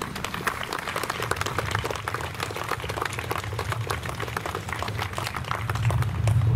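Crowd applauding: many hands clapping in a dense, irregular patter.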